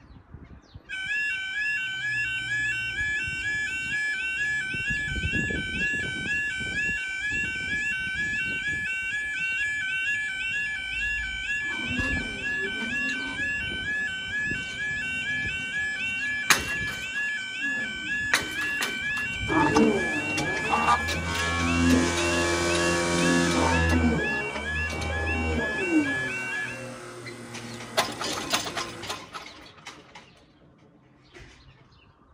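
UK level crossing yodel alarm warbling in a steady, repeating two-tone cycle as the crossing barriers lower. It cuts off a few seconds before the end. Over its later part a louder, lower rumbling with clatter joins in.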